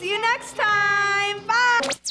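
Children singing long, drawn-out goodbye notes over a backing music track. The last note slides steeply upward and cuts off suddenly at the end.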